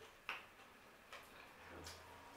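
Near silence with a few faint, brief clicks: one about a quarter second in and two fainter ones later.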